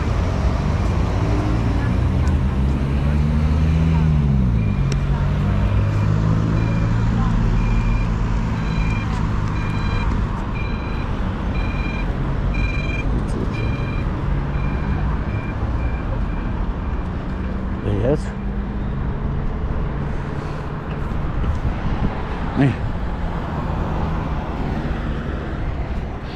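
Street traffic with a low engine drone whose pitch rises and then falls a few seconds in. Through the middle, a pedestrian crossing signal beeps in short high pips, about two a second.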